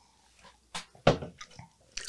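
A person drinking from a glass close to a microphone: a few short gulps and breaths, the loudest just after a second in.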